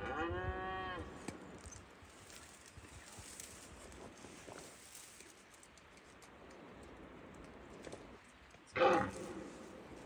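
Red deer stag roaring: one drawn-out call about a second long at the start, rising and then falling in pitch. A short, louder sound comes about nine seconds in.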